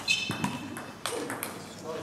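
Table tennis rally: the ball clicking off bats and table a few times, with a short high-pitched squeak at the start.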